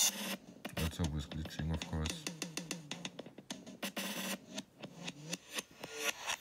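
Electronic drum loop run through the GlitchCore glitch effect on an iPad and played in reverse. The beat is chopped into rapid, irregular stuttering repeats of short slices.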